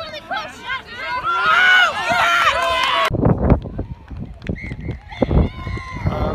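High-pitched women's voices shouting and calling during play, loudest in the middle and cut off abruptly. Then come low thumps on the microphone, and a long, faint whistle blast near the end: the referee's final whistle.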